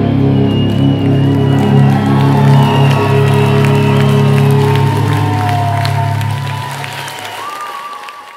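A live post-rock band's last held chord of bass and guitars ringing out and dying away, while the audience cheers and applauds over it. The whole sound fades steadily toward the end.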